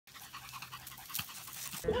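A small dog panting quickly and faintly, a soft rapid rhythm of breaths. A woman's voice cuts in at the very end.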